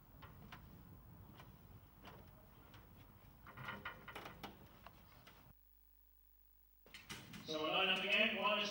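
Faint clicks and knocks of greyhound starting traps being loaded, the trap doors shutting behind the dogs. The sound cuts out for about a second, then a man's voice begins near the end.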